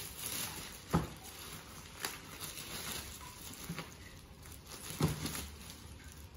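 A clear plastic bag rustling and crinkling as a boxed hamper is slid into it and lifted, with a few sharp knocks about one, two and five seconds in.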